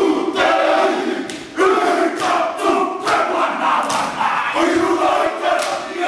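A group of men performing a haka, shouting the chant in unison in short, forceful bursts, punctuated by sharp hits.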